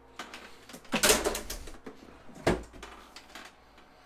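Plastic lid of an Igloo 28-quart thermoelectric cooler being handled and shut: a short rattle of handling about a second in, then the lid closing with a single thump about two and a half seconds in.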